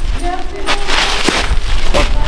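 Spectators' voices in short fragments over a low rumble, with a brief noisy burst about a second in.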